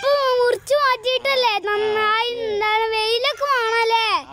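A child's high-pitched voice, held in long steady notes with short breaks, like singing.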